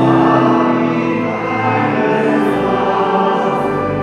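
A church congregation singing a slow hymn together with pipe organ accompaniment, in long held notes.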